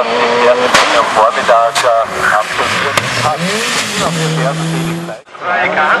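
A hillclimb race car's engine revving hard up and down through the gears, with several sharp exhaust backfire cracks on and off the throttle. Near the end the engine holds a steady note for about a second before the sound cuts briefly.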